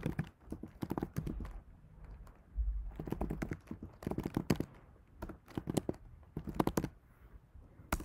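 Typing on a computer keyboard: irregular bursts of quick keystrokes as a long terminal command is entered, with short pauses between the bursts.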